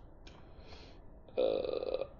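Quiet room tone, then about a second and a half in a man's drawn-out hesitation 'uhh', held on one steady pitch.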